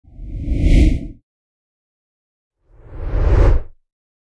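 Two whoosh sound effects, each swelling for about a second and then cutting off, with a deep rumble under each; the second sweeps upward in pitch before it stops.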